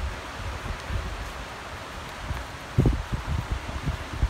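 Low, irregular rumble and thumps on a handheld camera's microphone over a steady hiss, with a stronger thump nearly three seconds in.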